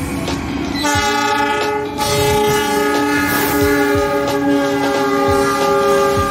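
Diesel locomotive horn sounding one long multi-note chord that starts about a second in and is held, over the clatter of train wheels on the rails.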